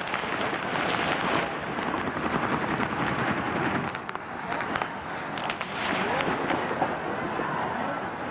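Stadium crowd noise with many sharp cracks scattered through it, which the report supposes were gunshots fired outside the stadium.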